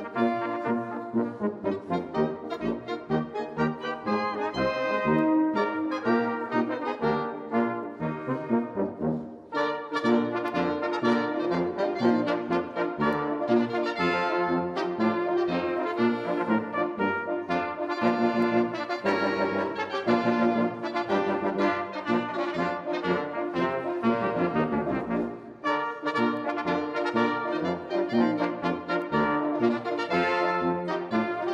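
A Swiss brass band playing a folk piece together, with euphonium, French horns and flugelhorn; the music breaks off briefly between phrases about ten seconds in and again near 25 seconds.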